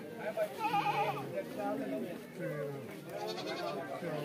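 A goat bleating, one wavering call about a second in, over the murmur of men's voices in a crowd.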